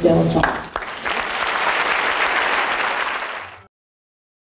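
A man's voice finishes a brief announcement, then an audience applauds steadily for about three seconds. The applause cuts off suddenly.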